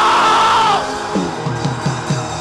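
Live church band music: a held keyboard-type chord with a quick run of four or five drum hits, falling in pitch, in the second half. A loud drawn-out shout sits over the music near the start.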